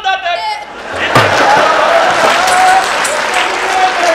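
A sung line breaks off, then about a second in a thump is followed by loud, continuous audience applause and cheering in a hall.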